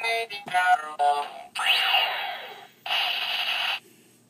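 DX Fourze Driver toy belt playing its electronic switch-activation sounds: a short pitched synthesized jingle, then two loud hissing, whooshing effects, the first with a falling sweep.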